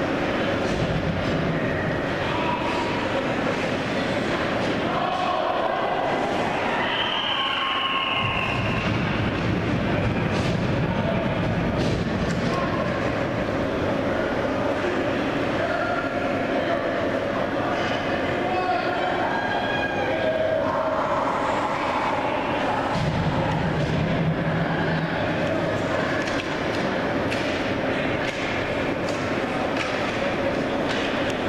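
Ice hockey play in an indoor rink: a steady wash of skates on ice, with many sharp clacks of sticks and puck, and indistinct voices calling out, all echoing in the arena.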